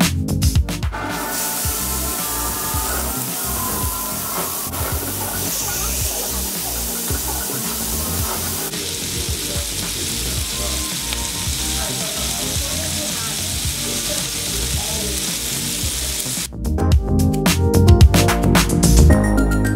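Skirt steak sizzling as it sears in a hot nonstick griddle pan, a steady hiss. Music plays briefly at the start and comes back near the end.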